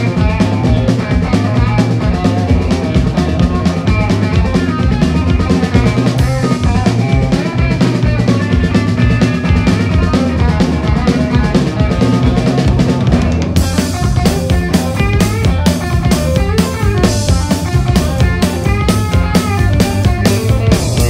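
Blues-rock band playing live: electric guitar, electric bass and drum kit, with the drums to the fore. About two-thirds of the way in the sound turns brighter.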